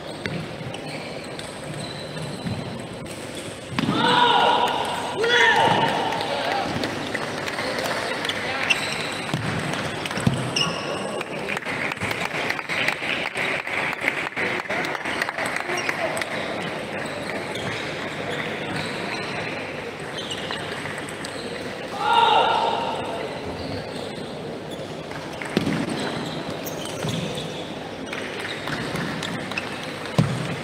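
Table tennis balls ticking irregularly on tables and paddles in a hall with several matches going on. A voice calls out briefly about four seconds in and again a little past twenty-two seconds.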